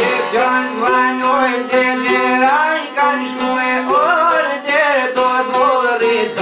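Three long-necked lutes plucked in a fast, steady folk rhythm over a sustained low drone, with a man singing a wavering, ornamented vocal line over them.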